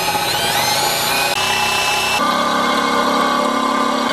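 Makita cordless drill boring holes in a black metal push bar. The motor starts at once and whines up in pitch through the first second, then runs steadily at speed. Its tone changes about two seconds in as the bit works through the metal.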